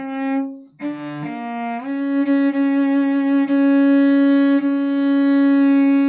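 A cello bowed slowly as an intonation drill: a few short notes in the first two seconds, a step down in pitch, then one long held note of about four seconds. The passage opens on the D-flat to D that has to be placed exactly in tune.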